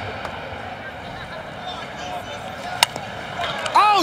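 Steady stadium crowd background, broken about three seconds in by a single sharp crack of a bat hitting a softball.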